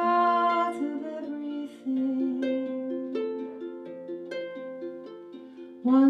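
Harp playing a slow instrumental passage between sung lines: single plucked notes that ring and fade one after another, after a sung note trails off about a second in.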